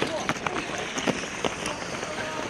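Running footsteps on the obstacle course's rubber-tiled track, a few sharp strides a second, over the hubbub of voices from people standing around the course.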